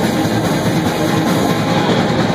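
Live rock band playing loud and without a break: electric guitar over a drum kit.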